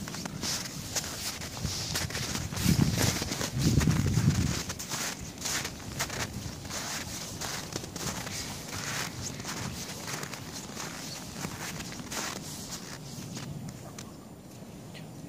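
Footsteps crunching through deep snow, about two steps a second, with a few heavier low thuds around three to four seconds in.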